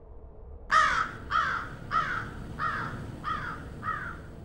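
A crow cawing: a run of six short calls, each falling in pitch, one about every two-thirds of a second, starting under a second in and growing fainter toward the end.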